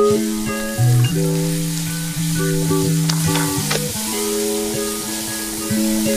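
Ground beef sizzling as it fries with onion and garlic in a hot metal wok, stirred with a wooden spatula that clicks and scrapes against the pan. Background music of held notes plays over it.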